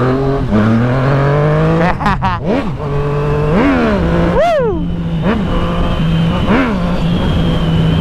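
Yamaha MT-09 three-cylinder motorcycle engine revving up steadily for about two seconds, then a sharp crack. It then runs low with a series of quick throttle blips, each rising and falling back; the biggest comes about halfway through.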